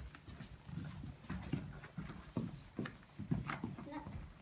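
Footsteps and shuffling on a hard floor: a run of light, uneven knocks, about two or three a second.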